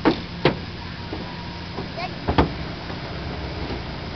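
Distant 454 big-block V8 pickup engine running with a steady low rumble, broken by sharp knocks: two in the first half second and a pair about two and a half seconds in.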